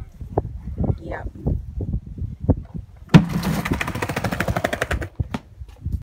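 Skateboard dropping off a small wooden ramp onto brick pavers. About halfway through there is one sharp clack as the board comes down. Then comes a rapid clatter of the wheels rolling over the paver joints for about two seconds, fading near the end. Before that there is low rumbling with a few scattered knocks.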